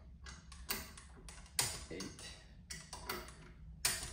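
Click-type torque wrench ratcheting as cover bolts are run down, breaking over with a click as each reaches its set torque of 100 inch-pounds. A string of sharp metallic clicks, a few a second.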